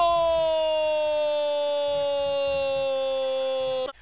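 A male football commentator's single long held cry of 'goal', pitch sliding slowly down over nearly four seconds, cut off suddenly just before the end.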